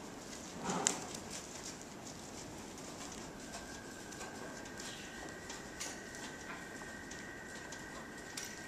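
Hoofbeats of a dressage horse on the soft sand footing of an indoor arena, faint muffled steps fading as the horse moves away, with one louder short burst of noise about a second in. A thin steady high tone comes in about three seconds in.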